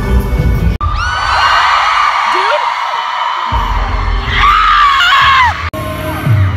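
Live concert audio recorded from the crowd: loud amplified pop music, then, after an abrupt cut about a second in, a crowd of fans screaming shrilly over the music. Another abrupt cut near the end brings the music back.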